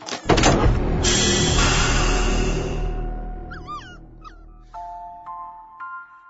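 A loud booming blast with a hiss sets in about a third of a second in and rumbles away over a few seconds. A few short, high puppy yips follow, then soft chime-like music notes begin.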